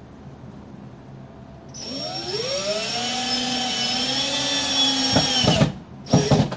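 Cordless drill running into the ceiling framing overhead. Its motor whine rises as it spins up about two seconds in, holds steady, then stutters with a few sharp clicks and stops near the end.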